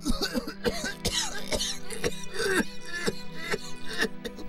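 A man coughing in a repeated fit, short harsh coughs coming two or three a second, over a steady background music score.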